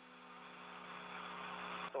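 Steady hiss with a low electrical hum from an open space-to-ground radio channel between calls, slowly growing louder.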